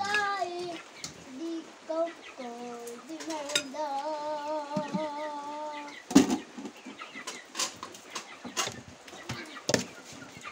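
Chickens clucking, with a long wavering call about four seconds in, then several sharp clinks of a metal spoon against glass plates and dishes, the loudest about six seconds in.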